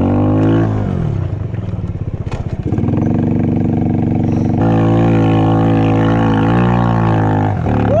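A snow quad's ATV engine is revved under throttle, with skis in place of its front wheels. The engine note rises, falls back about half a second in, and picks up sharply near three seconds. It steps higher again and is held steady for about three seconds, then drops off just before the end.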